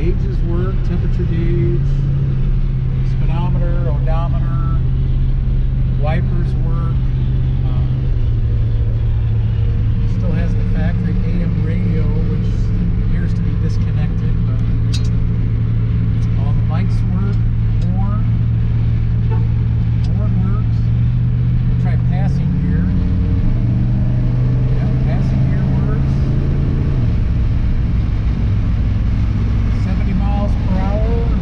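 The engine of a 1967 Plymouth Fury III cruising on the road, heard from inside the cabin over steady road noise. Its low note drops about a quarter of the way in, rises again later and drops once more near the end as the speed changes.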